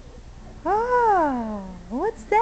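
A baby's long, loud vocal squeal, its pitch rising and then falling in one smooth arc, starting about two-thirds of a second in. A short rising call follows at the very end.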